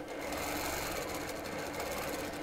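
Longarm quilting machine stitching steadily, its needle running at a fast, even rate.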